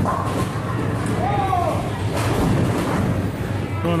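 Ten-pin bowling ball rolling down a wooden lane with a low rumble, then crashing into the pins about two seconds in, over the hall's background of voices.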